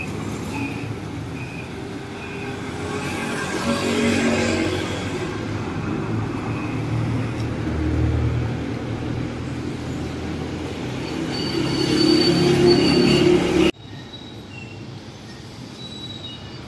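City street traffic close by: a bus's engine rumbling past, growing loudest about halfway through, among motorcycles, with a high thin squeal a few seconds later. The sound cuts off suddenly near the end and gives way to quieter street noise.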